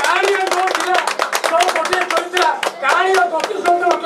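People clapping, a rapid, uneven run of hand claps, with several voices talking loudly over it.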